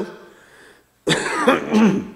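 A man coughing and clearing his throat: one sudden rough burst starting about a second in and lasting about a second.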